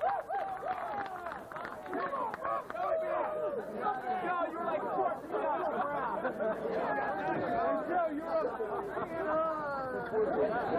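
Crowd of spectators chattering, many voices overlapping and calling out, with no single voice standing out.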